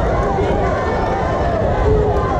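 Boxing crowd shouting, with several voices calling out at once over a steady hubbub.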